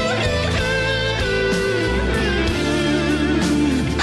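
Rock guitar music: a voice imitating a distorted electric lead guitar plays in harmony with a real guitar over a steady bass. The lead line bends and wavers in pitch.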